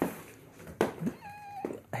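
Battery-powered toy, just switched on, giving one short, steady, high-pitched call about a second in, after a soft click.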